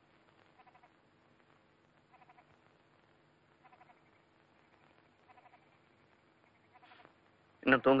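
A faint, short animal call repeats about every one and a half seconds in a quiet room. A voice speaks loudly near the end.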